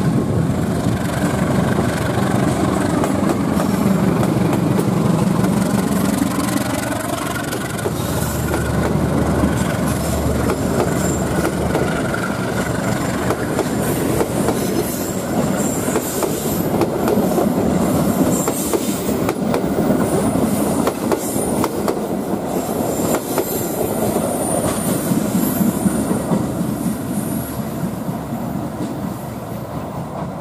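A KAI diesel-electric locomotive and its passenger coaches passing close by: the locomotive's engine is heard loudly at first, then the coaches' wheels clatter over the rail joints, with high-pitched wheel squeal in the second half as the train goes into the curve and the sound eases off near the end.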